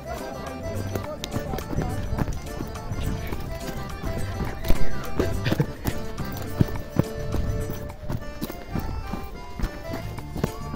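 Horse galloping through dry thorny scrub: irregular hoofbeats mixed with branches cracking and scraping past, the loudest crack about halfway through.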